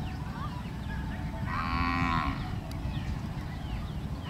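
A cow moos once, a short call about a second and a half in, over a steady low rumble.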